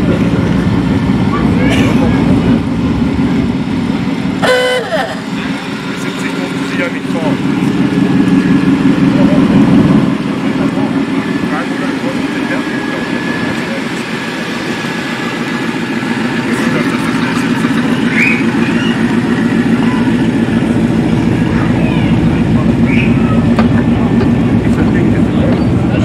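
Vans driving slowly past at low speed, their engines running steadily and loudest about ten seconds in as one passes close, with a short horn toot a few seconds in and people talking around them.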